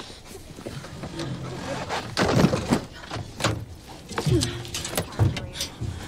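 A person clambering over vehicle seats: clothing and upholstery rustling, with a loud rush of rustling a little after two seconds in and several short knocks and bumps in the second half.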